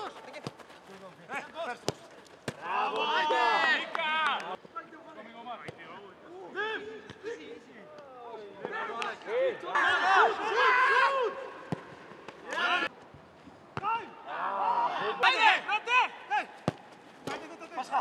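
Footballers shouting to each other during a training game, in several loud bursts, with the sharp thuds of a football being kicked and passed scattered between them.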